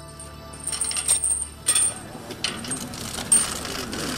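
Chain and padlock on a rusty metal gate rattling and clinking as they are unlocked, then the gate pushed open. Several sharp metallic clinks ring out, the loudest about three seconds in.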